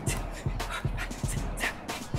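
A woman's quick, forceful breaths out, about two a second, in time with a fast exercise move, over background workout music with a steady beat.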